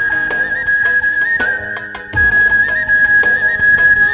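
Traditional folk music: a wooden flute holds a high, ornamented melody with quick trills over a steady beat of large bass drums, with a deep drum thump a little past the middle.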